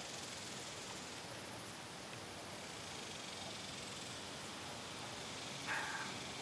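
Steady low hiss of outdoor background noise with no clear event in it, and one brief short sound near the end.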